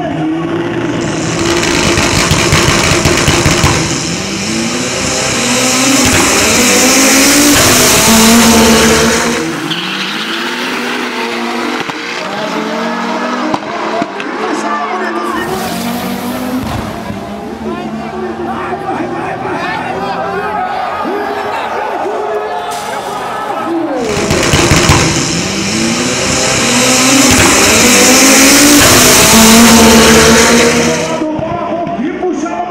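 Two turbocharged drag-racing cars, a Volkswagen Santana 4x4 and a Chevrolet Marajó, revving and accelerating hard, their engine pitch rising and falling. The engines are loudest for several seconds near the start and again near the end, with crowd voices mixed in.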